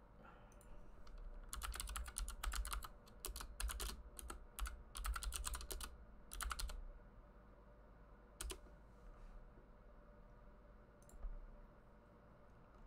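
Typing on a computer keyboard: a quick run of keystrokes lasting about five seconds, then two single clicks a few seconds apart.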